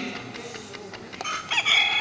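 A handheld quiz buzzer pressed against a microphone, playing a rooster-crow sound once, starting about a second and a half in and held for about a second.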